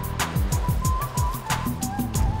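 Upbeat electronic news-segment intro music: a fast, even hi-hat-like ticking over repeated deep falling bass hits, with a thin wavering high synth line. Two whooshing sweeps pass through it, just after the start and about three quarters in.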